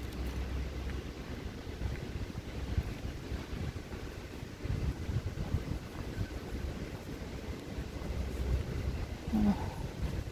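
Outdoor street ambience: a steady, uneven low rumble of wind on the microphone mixed with distant city traffic.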